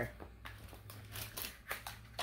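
Small product package of a volcanic face roller being handled and opened by hand: a run of faint crinkles and light clicks.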